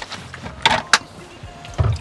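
Dishes and utensils knocking at a small kitchen sink as washing-up begins: a sharp clatter, a crisp click just before the second mark, and a dull thump near the end.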